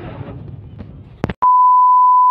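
Background crowd noise fades out about a second in, followed by two sharp clicks. Then a single steady, loud test-tone beep starts, the bars-and-tone sound of a colour-bars transition.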